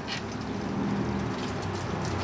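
Hot engine oil draining from the oil pan and splashing into a catch container, a steady patter over a low hum.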